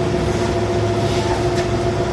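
Steady electrical hum over an even, rumbling background noise in the hall's sound system, with no distinct events.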